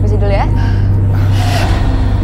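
A short rising vocal sound, then a sharp breathy gasp about a second and a half in, over a steady low hum.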